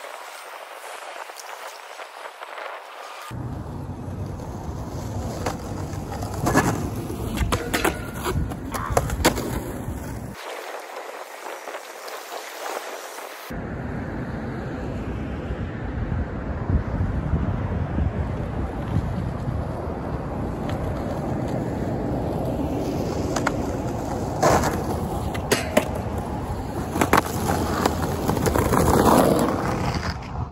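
Skateboard wheels rolling on rough concrete, with sharp clacks of the board popping and slapping down in two clusters, about a quarter of the way in and near the end. The rolling drops away twice, at the start and about ten seconds in.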